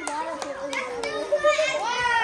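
Children's voices chattering and calling out in a room, with a few short crackles of gift wrapping paper being handled.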